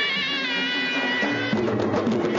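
Bagpipe music: a reedy piped melody stepping down from note to note, with sharper beats joining about a second and a half in.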